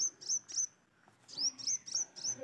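A bird chirping, fairly faint: quick, high chirps that slide downward, in two short runs of a few chirps each with a pause of about a second between them.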